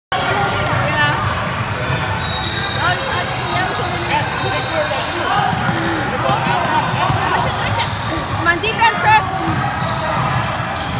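Basketball game on a gym's hardwood court: the ball bouncing and sneakers squeaking as players run, with voices calling out in the echoing hall. A few louder knocks come near the end.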